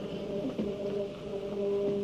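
Orchestra playing soft, sustained chords, a few notes held steadily at low and middle pitch.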